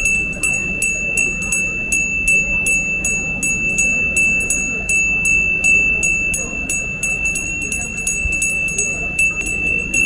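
Small hand-held puja bell rung without pause during a lamp-waving worship rite: a bright ringing tone renewed by clapper strikes about three times a second.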